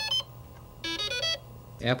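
Electronic computer bleeps: short runs of stepped, buzzy synthesized tones, one ending just after the start and another about a second in, over a low steady hum.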